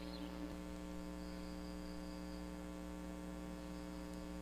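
Steady, quiet electrical mains hum with a stack of even overtones and no other sound.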